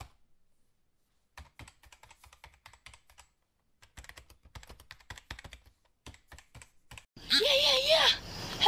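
Computer keyboard typing, a run of irregular keystrokes several a second for about six seconds. About seven seconds in, it gives way abruptly to a louder outdoor recording of a high, wavering voice with crickets chirping.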